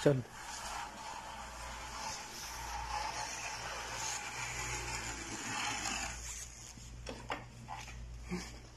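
Small electric mini motorcycle riding along a tiled floor: a steady whirring hum from its electric motor and tyres, which fades out after about six seconds.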